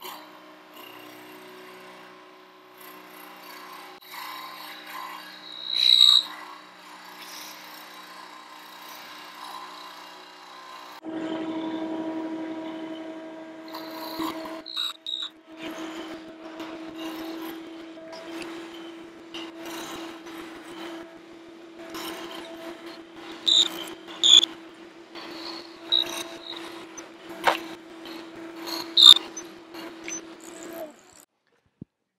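Milling machine spindle running a half-inch end mill through purpleheart wood, fed by hand: a steady motor hum under scattered clicks and ticks of the cut. About eleven seconds in the hum turns louder and lower, and a few sharp ticks stand out, one loud one early and several near the end.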